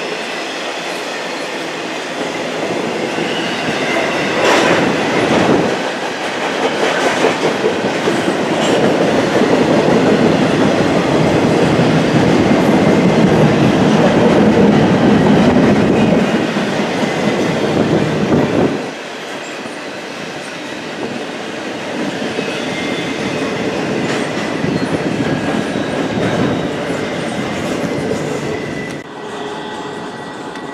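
Double-stack intermodal container cars of a long freight train rolling past: steady wheel rumble and clatter over the rail joints, with faint high wheel squeal at times. It is loudest in the middle and drops off abruptly about two-thirds of the way through.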